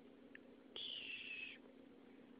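A baby's brief high-pitched squeal, a single thin note lasting under a second that falls slightly in pitch, over a low steady room hum.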